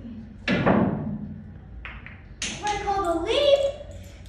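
Pool cue striking the cue ball and billiard balls knocking together about half a second in, with a short click a little later. Then a child's excited shout with rising pitch near the end.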